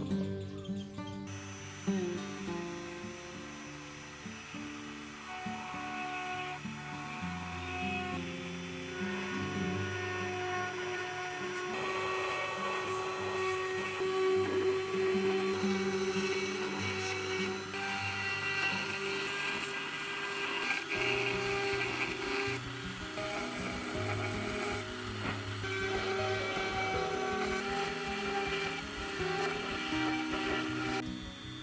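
Background music over a small high-speed rotary engraving tool running as its bit cuts letters into coconut shell, most clearly in the second half.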